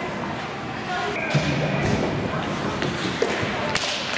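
Ice hockey rink ambience in a stoppage before a faceoff: voices echoing in the arena with a few sharp knocks, the last near the end.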